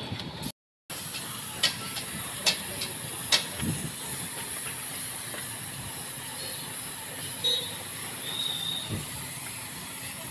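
Gravity-feed paint spray gun hissing steadily with compressed air, with a few sharp clicks in the first few seconds. The hiss begins after a brief gap of silence about half a second in.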